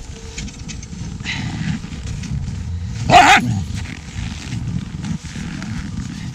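Husky sled dogs playing on the snow, with one loud short dog cry about three seconds in that falls in pitch, over a steady low rumble.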